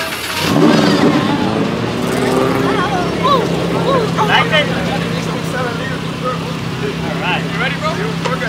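A sports car engine revs up briefly about half a second in, then settles to a steady idle hum, with children's voices over it.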